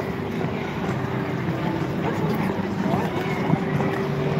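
Continuous rumbling scrape of ice skate blades gliding over rink ice, with voices of other skaters mixed in.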